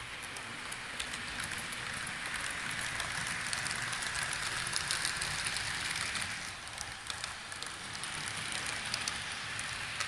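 Model electric trains running on layout track: a steady rushing rumble of wheels and motors peppered with rapid small clicks over the rail joints. It grows louder in the middle as the yellow train passes close.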